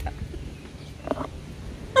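A woman's short, stifled laugh about a second in, over a faint low background rumble.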